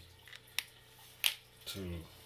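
Marker scribbling over a paper shipping label on a cardboard box: a few short, sharp strokes, the loudest a little past the middle.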